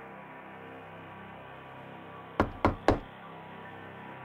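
Three quick knocks on a wooden room door, about a quarter second apart, a little past halfway through, over a soft, sustained ambient music bed.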